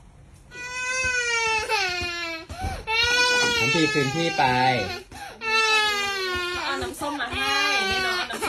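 A toddler crying in about four long wails with short breaths between.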